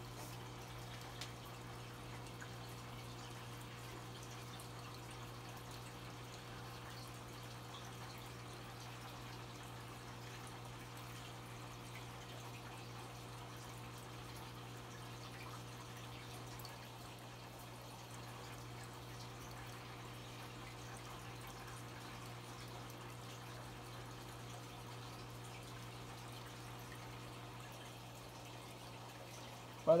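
Aquarium filters running: a steady low hum under faint trickling, dripping water.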